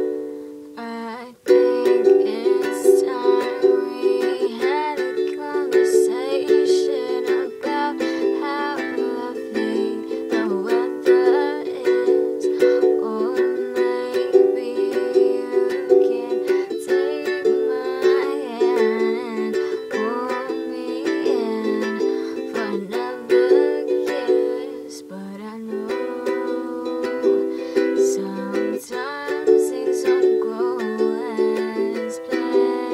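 Acoustic ukulele strummed in steady chords, with a woman's voice singing over it; the strumming breaks off briefly about a second in, then carries on.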